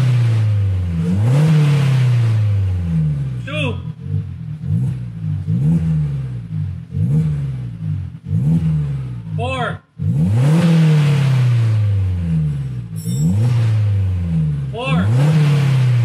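2019 Suzuki Jimny engine revved repeatedly through a newly fitted Greddy Xcross dual-exit exhaust with mid and rear mufflers. About a dozen quick throttle blips each rise sharply and fall back toward idle, with a brief break about ten seconds in.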